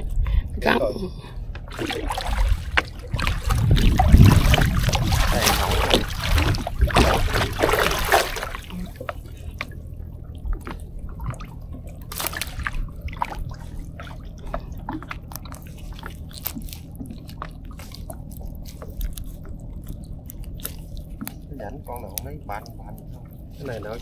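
Wet nylon gill net being hauled into a small boat and picked over by hand, with water dripping and sloshing. It is loud and rushing for the first several seconds, then settles to light clicks and rustles.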